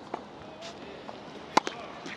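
Tennis racket striking the ball on a flat serve: one sharp pop about one and a half seconds in, followed at once by a lighter click, over faint outdoor court noise.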